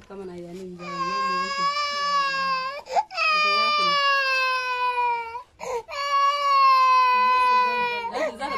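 A toddler crying hard: three long, high wails, each drawn out for about two seconds and sagging slightly in pitch, with short breaths between them.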